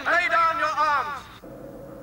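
A man's voice from the cartoon soundtrack for the first second or so, then a quieter steady low drone.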